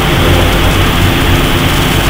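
Steady loud hum with an even hiss over it, the constant background noise on the recording, with no distinct events.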